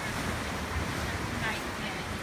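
Ocean surf washing against the sandstone rock shelf below, a steady rushing wash, with wind buffeting the microphone.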